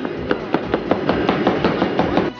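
Kitchen knife chopping scallion and ginger on a cutting board in quick, even strokes.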